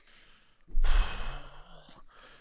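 A man's heavy sigh: a breathy out-breath starting about two-thirds of a second in, fading over about a second and ending in a faint hum of voice.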